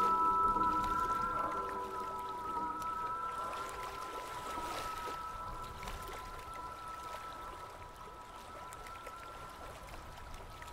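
Soft ambient instrumental music: two long high held tones over lower notes that stop in the first two seconds, the whole fading away steadily. A faint trickle of hot-spring water lies underneath.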